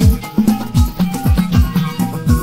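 Instrumental backing track of a Moroccan chaabi song, with no vocals. A steady beat of deep drum hits, each falling in pitch, comes about three times a second under a sustained keyboard or bass line and a shaker-like rattle.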